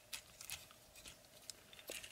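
Faint clicks and ticks of plastic parts on a Transformers Optimus Prime action figure being unfolded and shifted by hand.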